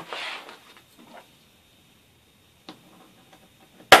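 Soft handling on a desk, a faint click, then one sharp loud click near the end as the hand hole-punching tool finishes the centre hole in the notebook cover.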